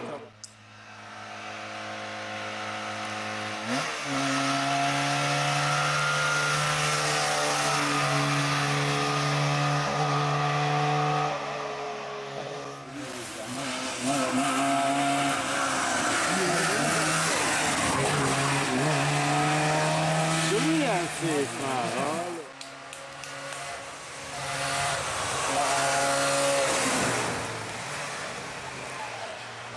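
Trabant P60 rally car's two-cylinder two-stroke engine running hard at high revs on several passes, its note held steady for stretches of several seconds and dropping away between them, with wavering higher sounds in the middle.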